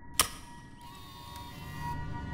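A single sharp click about a fifth of a second in, a projector switching on, over ambient music of steady held tones that fills out about a second in.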